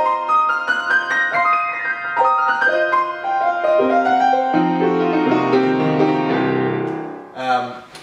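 Mahogany Halle & Voigt baby grand piano played by hand: a flowing melody of single notes over lower bass notes, which dies away about seven seconds in. A man starts talking just before the end.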